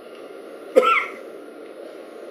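A single short vocal sound from a man, cough-like and sudden, about a second in, over steady room hiss.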